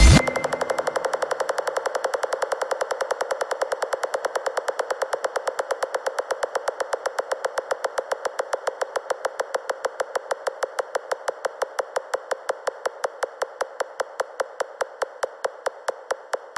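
Psytrance breakdown: the kick drum and bass cut out suddenly, leaving a lone synthesizer pulsing in a rapid, even rhythm that slowly fades.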